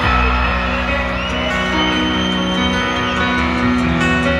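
Live band playing the slow opening of a country song, with a deep bass note at the very start followed by sustained chords, heard from within a concert crowd.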